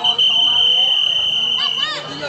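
Referee's whistle blown in one long, steady blast that cuts off suddenly near the end, signalling play to begin in a kasti game.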